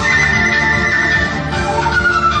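Vietnamese bamboo transverse flute (sáo trúc) playing a solo melody: a high note held for about a second, then sliding downward, over a low instrumental accompaniment.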